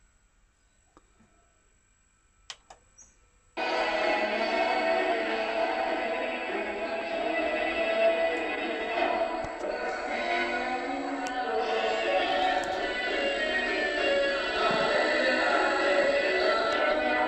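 A few faint clicks, then about three and a half seconds in, music with singing starts abruptly and carries on. It is the soundtrack of a VHS tape being played back on a Supra SV-T21DK VCR, heard through the television, thin and with little bass.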